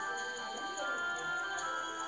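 Children's story-app background music: held melodic tones over a quick, steady ticking, about five ticks a second.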